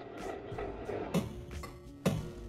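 An isolated electronic sound-effect sample from a trap beat, a "little weird thing", playing back on its own. A dense, grainy texture gives way to a sharp hit about a second in, followed by a quieter stretch of a few held tones.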